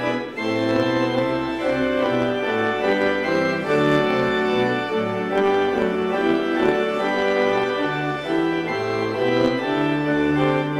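Organ playing the recessional hymn in held chords, the notes moving about every half second to a second.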